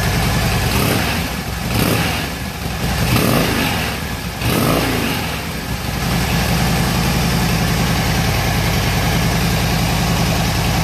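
2011 Harley-Davidson Dyna Fat Bob's air-cooled V-twin running through its stock exhaust pipes. It is revved a few times in the first half, with the pitch rising and falling, then settles back to a steady idle.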